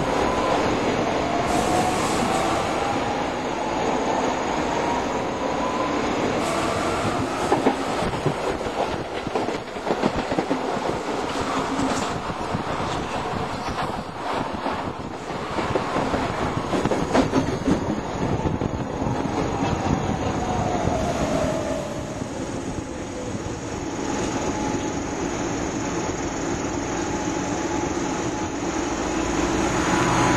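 Milan Metro line M2 train running, heard from on board, with steady rumble and rail noise. A pitched whine climbs in the first few seconds and another falls a little past halfway, with scattered clicks over the rails in between.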